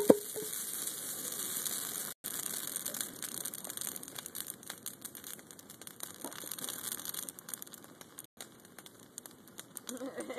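Bonfire of wooden pallets and a Christmas tree crackling: a steady hiss of burning wood with many small sharp pops, after a single loud knock right at the start.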